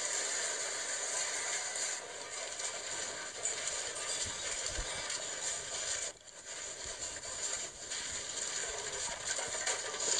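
Steady rattling, hissy noise of a shop's shelves and fittings shaking in an earthquake, with a few low thumps near the middle and a brief drop-out about six seconds in.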